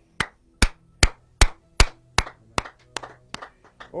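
Hand clapping in a steady rhythm, about ten sharp claps at roughly two and a half a second, growing softer in the second half.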